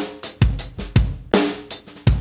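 Recorded drum kit playing back a steady beat (kick, snare and cymbals) through a mix, with a heavily compressed parallel 'crush' bus, summed toward mono, blended under the dry drums.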